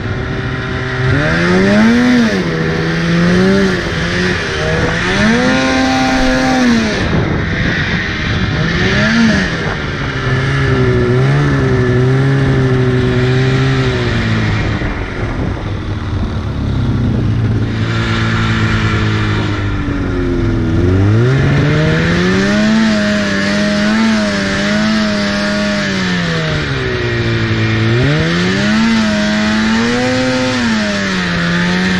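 2004 Polaris RMK 800 snowmobile's two-stroke twin engine revving up and down repeatedly as the sled is ridden through deep powder, its pitch rising and falling with the throttle. About two-thirds of the way through it drops to a low note, then climbs again.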